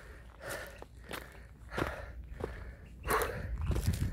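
Footsteps of a hiker walking on a dry dirt trail, coming at a steady walking pace of about one and a half steps a second, over a low steady rumble on the microphone.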